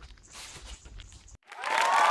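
Faint outdoor background noise that cuts off suddenly about a second and a half in, followed by a loud swelling burst of applause-like noise opening the end-screen audio.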